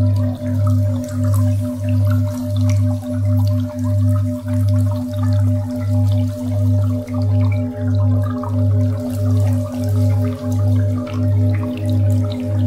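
Ambient sound-healing music: a low drone pulsing evenly a little under twice a second under a steady tone near 528 Hz, with scattered water-drop sounds.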